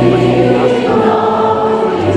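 Congregation singing a song together, many voices at once, over held low accompanying notes that shift to a new pitch about a second in.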